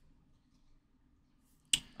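Near silence, then a single sharp click near the end.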